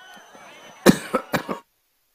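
A man coughing three times in quick succession about a second in, loud and close. The sound then cuts off abruptly to dead silence.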